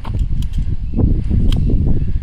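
Wind rumbling on the microphone, with a few light clicks from handling an AR-style rifle while a round is being chambered.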